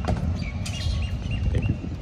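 Steady low outdoor rumble with a few faint, short bird chirps in the middle, and a single click right at the start.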